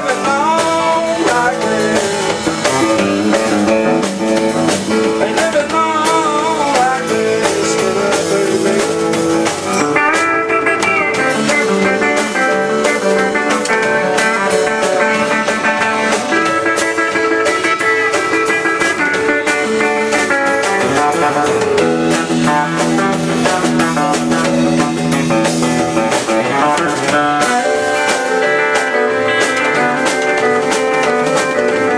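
Live band playing an instrumental stretch in a bluesy style: electric guitar over bass guitar and drum kit, with wavering, bent guitar notes about six to seven seconds in.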